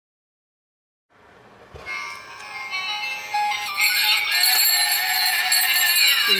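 A battery-operated musical Santa hat playing a tinny electronic Christmas tune, starting about a second in and growing louder.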